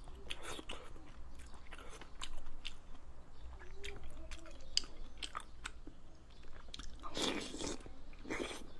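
Close-miked chewing of soft braised food, with wet, sticky mouth sounds and many short sharp clicks of lips and tongue. A louder, longer burst of mouth noise comes near the end.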